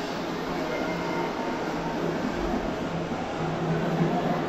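A steady mechanical drone: a constant low hum with a noise bed, like a running engine or large machine, holding level throughout.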